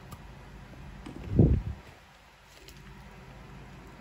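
A single brief low thump about a second and a half in, against faint rustling and light clicks of handling.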